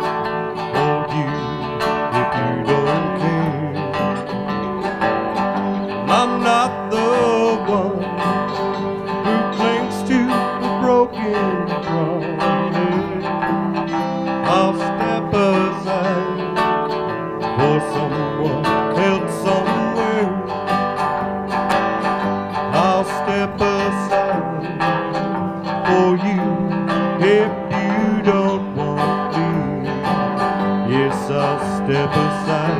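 Live country band playing a song: strummed acoustic guitars over electric bass, with a singer at the microphone.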